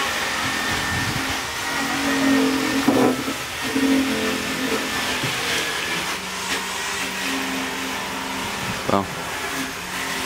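Steady mechanical background noise with a thin, constant high whine, like a motor running, under faint distant voices, with a couple of light clicks.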